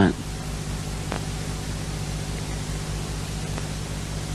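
Steady hiss with a low electrical hum underneath, the background noise of the sermon recording during a pause, with two faint ticks.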